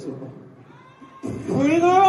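A man's long drawn-out shout of "go" through the concert PA, one voice held on a slowly rising, wavering pitch, starting a little past halfway after a short lull.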